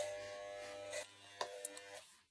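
Corded electric hair clippers buzzing steadily while shaving a head. The buzz drops away about a second in, followed by a couple of faint clicks.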